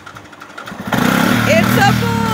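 Four-wheeler ATV engine running with a light regular ticking, then revved hard about a second in and held at high speed. Voices call out over it near the end.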